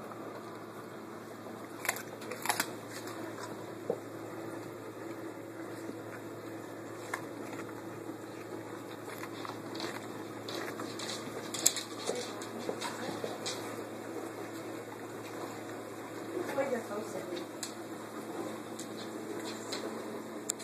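A husky chewing honeydew melon rind: scattered wet crunches and sharp clicks of teeth, with a cluster about two seconds in, the loudest crunch about halfway through, and more near the end. A faint murmur of voices runs underneath.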